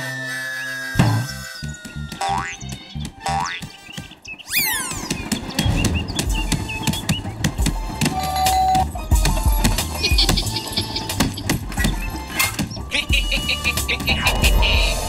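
Cartoon sound effects over background music: a falling whistle tone, then springy boing sounds that glide up and down, then a quick rising sweep. After that comes busy comic music with rapid percussive hits.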